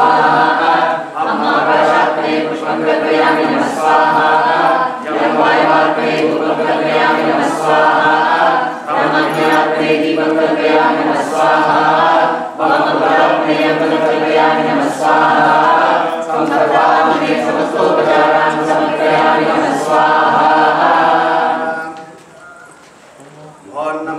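A group of voices chanting Sanskrit Vedic mantras together in unison, in phrases of a few seconds each with short breaks for breath, breaking off near the end.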